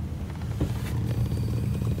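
Steady low rumble of an idling diesel truck engine, heard from inside the cab.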